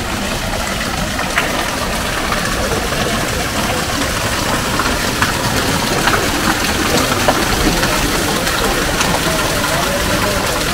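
Steady rushing and splashing of water running into the long stone trough of a carved wall fountain, with a few faint scattered clicks over it.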